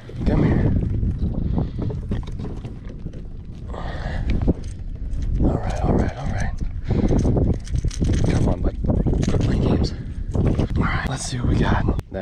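Close handling noise as a landed bass is unhooked: scattered knocks and clicks of the lure's treble hooks and the fish against the kayak, over a low rumble of wind on the microphone, with some low muttering.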